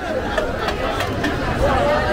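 Chatter of a dense outdoor crowd: many voices talking and calling over one another at once.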